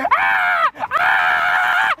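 A man screaming in two long, high-pitched cries, each rising and then falling in pitch.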